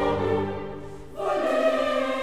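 Baroque chorus and orchestra: a sung chord fades away over the first second, then the orchestra comes back in with strings.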